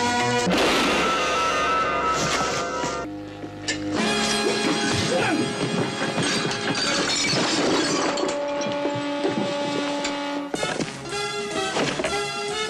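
Background music with the crashes and shattering of a staged fight mixed in. The music drops out briefly about three seconds in.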